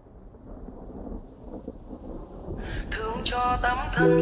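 Rain-and-thunder ambience opening a lo-fi song: a low rumbling noise that builds steadily. About two and a half seconds in, a melodic line starts above it.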